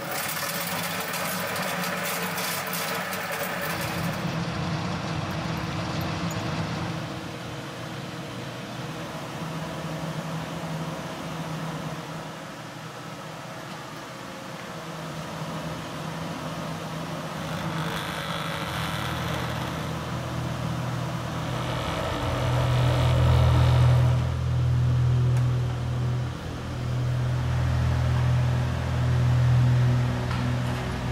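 A low, steady droning rumble that gets louder about two-thirds of the way through.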